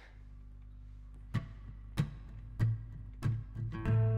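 Acoustic guitar starting a song: after a quiet first second, short strummed strikes about every 0.6 s grow louder into ringing chords near the end.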